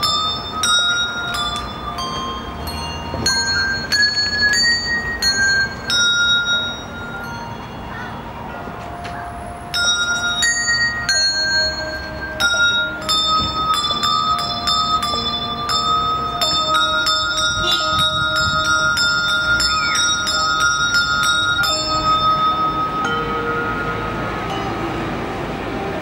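A handbell ensemble playing a piece on brass handbells: pitched notes struck one after another in a melody, each ringing on after the stroke. Around the middle the notes come faster in a run, and near the end fewer new notes sound as the last chord rings out.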